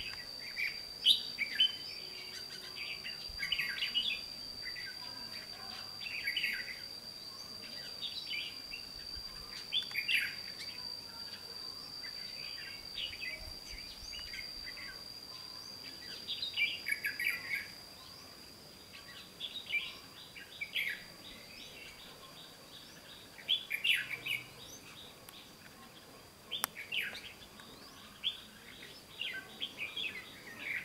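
Red-whiskered bulbuls singing: short warbling phrases repeated every second or two, louder in the first half and more spaced out later. A steady thin high tone runs on underneath.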